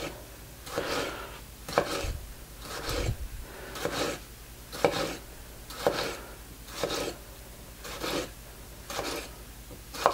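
A Marser STR-24 knife slicing through a tomato on a wooden cutting board, about ten even strokes at roughly one a second. Each stroke is a short rasp as the blade draws through the skin and touches the board.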